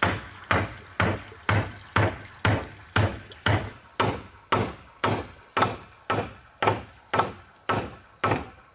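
Claw hammer driving a nail into a wooden railing post: steady, even strikes about two a second, each with a short ring.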